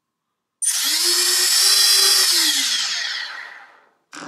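Brushless motors of a QAV250 miniquad spinning up on throttle after the quad is armed: a loud, high-pitched electric whine that starts suddenly, rises in pitch, holds, then winds down and fades as the throttle is pulled back.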